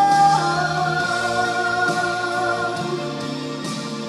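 Female solo singer holding a long closing note of a gospel song, stepping down in pitch just under half a second in and sustaining it for over two seconds, over accompaniment that slowly fades.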